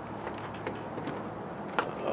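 Low, steady background hiss with two faint clicks, one under a second in and one near the end.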